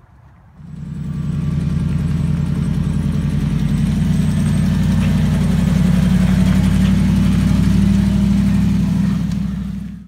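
Ram pickup truck's engine running under load as it tows a car trailer carrying a 1978 Oldsmobile Cutlass. It comes in about half a second in, builds over the next second and then holds as a steady low engine note, a little louder in the middle, until it stops abruptly at the end.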